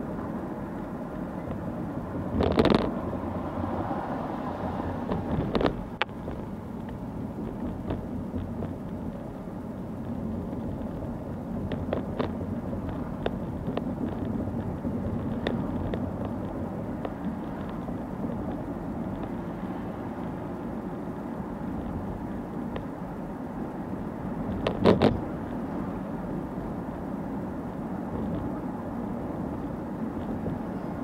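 Steady road and engine noise heard inside a moving car's cabin, with a few short knocks and creaks from the car's interior, the loudest about two and a half seconds in and again near twenty-five seconds.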